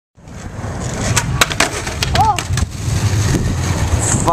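Skateboard wheels rolling on asphalt with a steady low rumble, broken by several sharp clacks of the board popping and hitting the ground in a flip-trick attempt.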